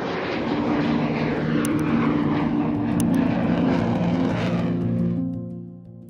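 Lockheed U-2 flying low overhead, its jet engine giving a steady rushing noise that fades out near the end. Under it, background music holds sustained low notes.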